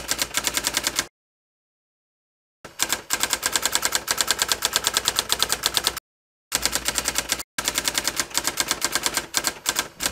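Typewriter-style typing sound effect: rapid, evenly spaced key clicks, broken by a long stretch of dead silence about a second in and two short gaps later.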